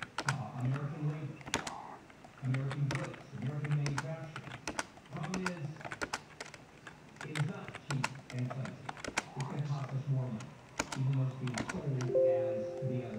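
Talk-radio speech, too muffled for words to come through, with many sharp, irregular clicks over it.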